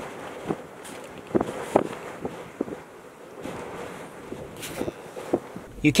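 Strong wind blowing: an even hiss with scattered short gusts buffeting the microphone.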